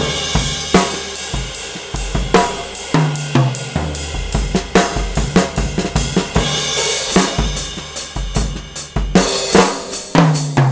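1970s Rogers Londoner drum kit played in a busy groove: bass drum, snare and tom hits over hi-hat and cymbals. The low drums ring on after each stroke with a long boom, and the cymbal wash swells near the start and again toward the end.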